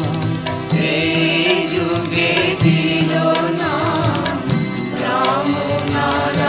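Bengali nam-sankirtan devotional music: a winding melody over steady held tones, with percussion strokes throughout.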